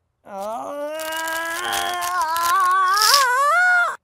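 A young man's long drawn-out groan of pain as a Band-Aid is peeled slowly off his arm. It rises in pitch and grows louder into a strained cry before cutting off.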